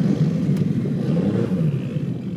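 A Nissan Skyline R34 drift car's engine running under throttle as the car is driven across grass, its note rising and falling.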